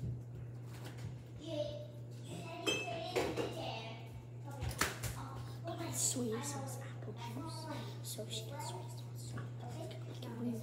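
Quiet children's voices with knocks and clinks of cups and objects being handled on a kitchen counter, including one sharp click about five seconds in, over a steady low hum.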